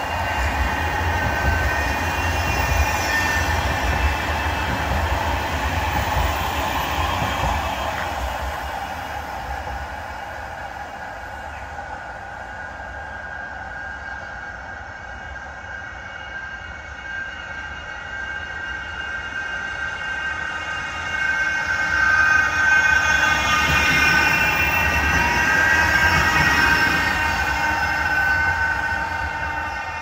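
Bombardier Flexity M5000 trams running on street track, an electric whine over the rumble of wheels on rail. One tram is loud as it passes at the start, the sound fades, and another builds up loud again past the middle.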